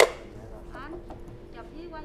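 A single sharp knock as the floor scrubber's battery charger and plug cable are handled on the floor, followed by a short ringing decay. A faint steady hum runs underneath.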